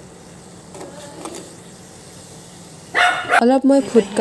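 Suji jalebi batter frying in a pan of hot oil, a quiet steady sizzle. About three seconds in, a woman's voice cuts in, much louder, breaking off and starting again.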